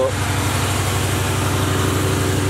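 Box Chevy Caprice's small-block 305 V8 idling steadily with an even low pulse. It has just been restarted and is still running rich; the owner says it is only gas burning out of the cylinder and will clear up.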